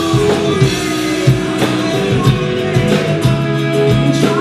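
A live band playing an instrumental passage: acoustic and electric guitars over bass guitar, with a drum kit keeping a steady beat.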